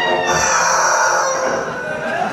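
A shrill, high-pitched vocal cry through the PA, rising and then held for about a second and a half, sounding like a rooster crow.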